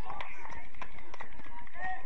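Football players' voices calling out during play, over a quick patter of running footsteps and sharp knocks.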